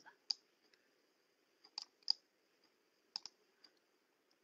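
A few faint, scattered clicks, about six of them, over a low steady hiss.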